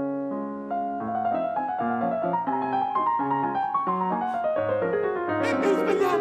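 Grand piano played solo: a lively melody of many quick notes, with a run of notes descending over the last couple of seconds.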